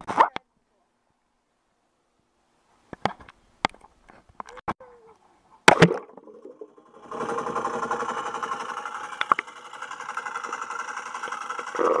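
A waterproof action camera being knocked about by a dog: a few separate knocks and clatters, then a loud hit and splash as it goes into a swimming pool just before six seconds in. From about seven seconds a steady muffled underwater rushing with a fast, even flutter is heard.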